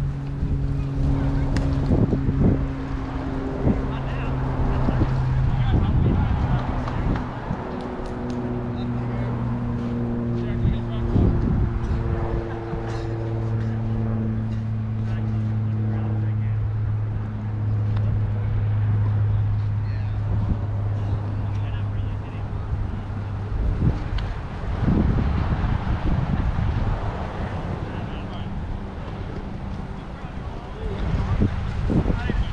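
A low motor drone runs throughout, its pitch shifting in steps every few seconds, over wind on the microphone.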